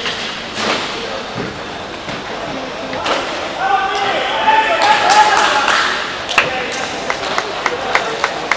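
Hockey players slapping hands in a post-game high-five line: a run of short sharp slaps, a few a second, in the second half. Before that, several voices shout and chatter.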